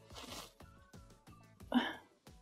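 Soft background music, with a brief swish in the first half second and a short vocal sound near the end.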